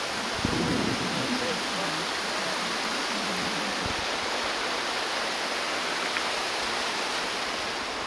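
Steady rushing noise during a chairlift ride, with two low thumps about half a second and four seconds in.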